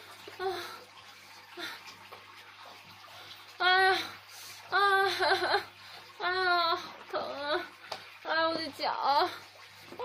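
A young woman's pained moaning and whimpering: a string of drawn-out, wavering cries without words, starting a few seconds in, as she holds a foot she has sprained.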